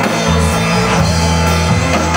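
A live rock band playing loudly through a PA: electric guitar and drum kit over a steady bass line, with no singing in this stretch.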